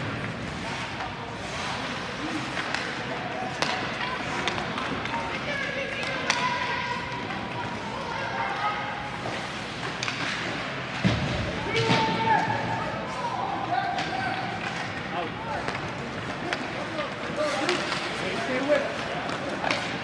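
Ice hockey game ambience: background chatter and calls from spectators, with short sharp knocks of puck and sticks against the boards and a louder thud about eleven seconds in.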